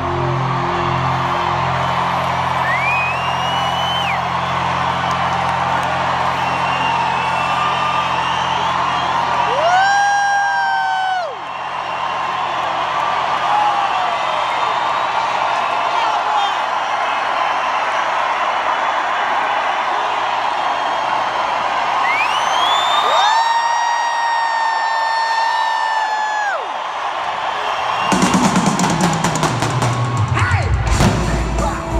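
Live concert: a singer holds a few long notes that slide up into each held pitch and fall away at the end, over steady crowd cheering while the band is mostly quiet. Near the end the full band with drums comes back in loudly.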